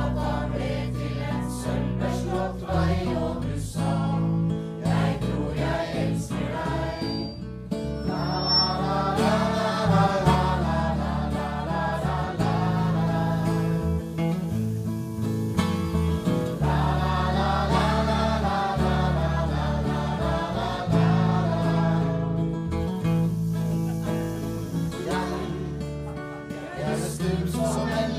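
Live acoustic band: acoustic guitars strumming under a small group of men and women singing together. The voices swell fullest about a third of the way in and again past the middle, over a steady low accompaniment.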